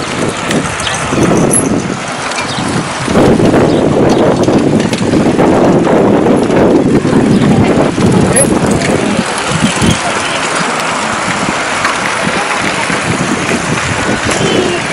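Overlapping voices of a large group of cyclists talking and calling out as they ride along, loudest in the middle stretch.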